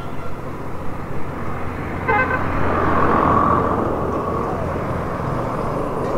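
Road traffic noise with a large vehicle passing close by, swelling about three seconds in and slowly fading. A short vehicle horn toot sounds about two seconds in, over a steady low engine hum.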